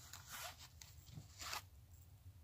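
Faint rustling as a paperback book is handled and raised: two soft rubs about a second apart.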